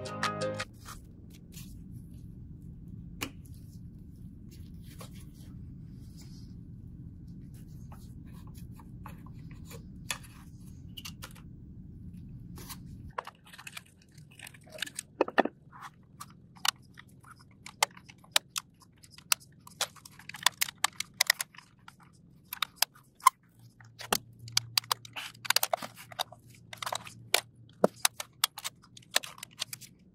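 Soft background music, dropping lower about 13 seconds in. Over it come many small clicks and crackles of the Xbox Series X mainboard and its perforated metal shield being handled and pried apart.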